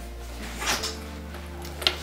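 Soft background music with a steady tone, under the brief rustle of a padded fabric pouch being handled about two-thirds of a second in, and one short click near the end.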